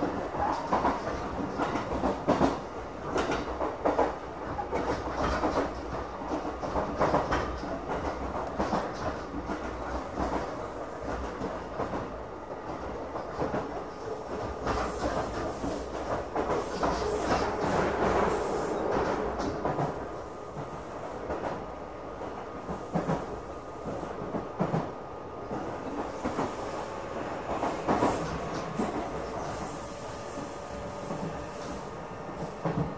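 Electric commuter train on the JR Kisei Line heard from inside a passenger car while running: a steady rumble with wheels clicking irregularly over rail joints, and a faint steady tone coming in near the end.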